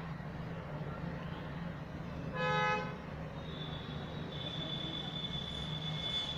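A horn toots once, about half a second long, midway through, over a steady low background hum. A little later a thin, high, steady tone sets in and runs on.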